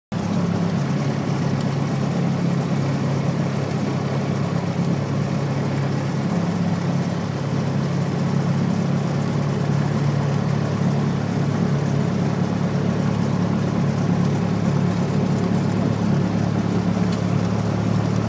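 Piston engine and propeller of a light single-engine airplane, running steadily at low power with an even drone, heard inside the cockpit.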